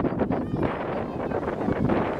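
Wind buffeting the microphone in a steady rumbling rush, with children's voices faintly heard in the distance.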